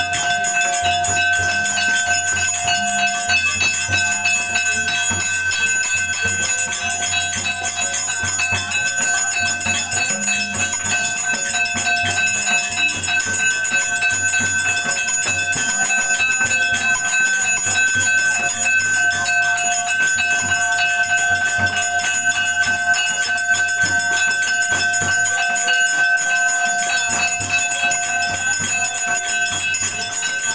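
Temple bells and jingling metal ringing rapidly and without a break, with steady ringing tones held under the strokes: the bell-ringing of an evening aarti.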